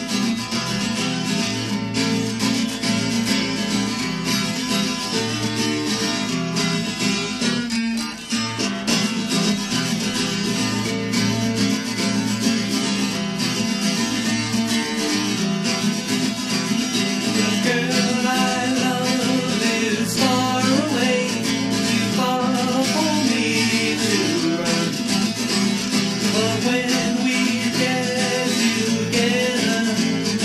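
Acoustic guitar strummed at a steady tempo, playing a song's instrumental introduction straight after a four-count. In the second half a higher melody line with bending pitches comes in over it.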